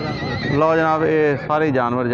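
A horse whinnying, with a high wavering call in the first half-second. Men talk around it.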